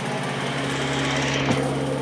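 Steady mechanical hum from a small motor, a low tone with a higher one joining about half a second in, and a single sharp click about one and a half seconds in.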